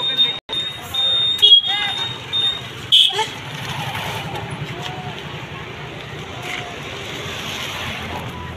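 Modelling balloons being inflated with a hand pump and worked by hand: a few rubbery squeaks in the first two seconds, then a steady rush of noise over street traffic.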